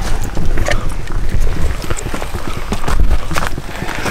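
Footsteps and rustling of people walking at night over rough ground, irregular knocks and crunches over a heavy low rumble on the microphone.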